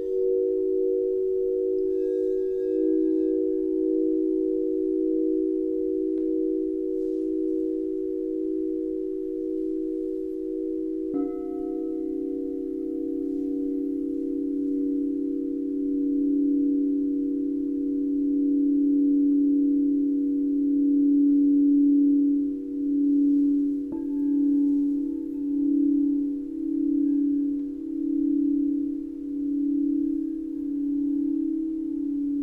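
Several crystal singing bowls ringing together in long, overlapping sustained notes. A bowl is struck about eleven seconds in, adding a lower note, and another strike comes near the 24-second mark, after which the tones waver in a slow pulsing beat.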